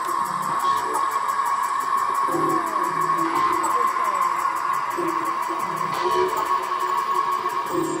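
Loud electronic dance music from a DJ set, played over a club sound system and picked up on a phone's microphone. A held high synth tone sits over a lower riff that repeats about every two and a half seconds.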